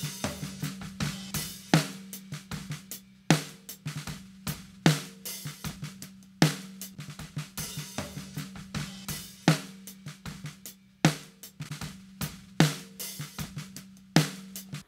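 Multitrack snare drum recording played back with its processing on: Omega A saturation and 1176-style compression, no EQ, making it a little brighter and more energetic. A loud snare hit comes about every one and a half seconds, with quieter hits in between.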